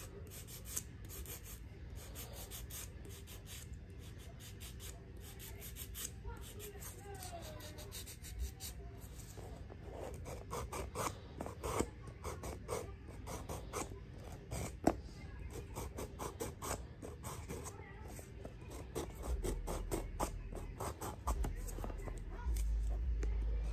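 A 100/180-grit nail file rubbed over natural fingernails in short, quick strokes, buffing off the shine: faint scratching that grows busier and louder about halfway through.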